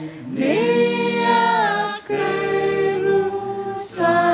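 Voices singing unaccompanied in long held notes, with a short break for breath about halfway through.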